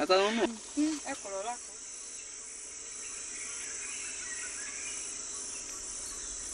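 Steady high-pitched chorus of insects, with a few brief voices in the first second and a half.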